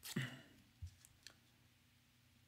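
Hands sticking small pieces of tape and thin metal cutting dies down onto a card panel: a short rustle, then a few light clicks.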